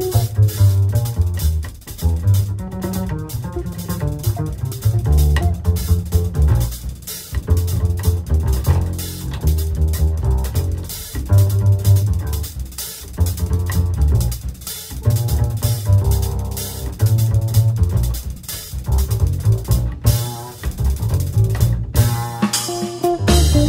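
Jazz trio recording in which the upright double bass carries a busy, prominent line of low notes over a drum kit's cymbals and drums.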